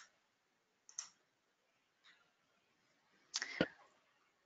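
Two faint, short computer-mouse clicks about a second apart as the slide advances, then a brief burst of handling or breath noise near the end.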